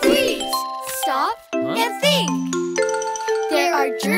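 Children's nursery-rhyme song: cartoon children's voices singing and calling out lines over bright children's music with bell-like chimes.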